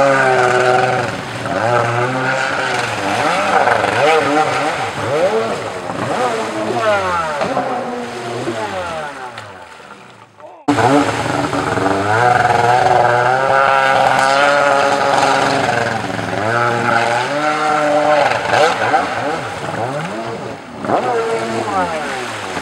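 Ported Yamaha 701 two-stroke twin of a stand-up jet ski, revving up hard and dropping off again over and over as the ski is thrown through turns and flip attempts. The sound cuts out abruptly about halfway through and comes straight back at full level.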